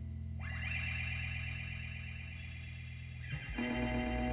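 Ambient electric guitar played through effects pedals over a sustained low drone: a chord swells in just after the start, holds, and fades a little over three seconds in, then a new chord enters. No drums or voice.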